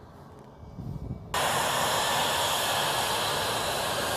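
Jet engines of an F-22A Raptor taxiing: a low rumble at first, then a sudden jump, a little over a second in, to a loud, steady jet roar and hiss.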